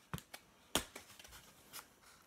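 A few short, sharp clicks and crackles of a thin metal needle being pushed through the rim of a paper plate to make a hole, the loudest about three quarters of a second in.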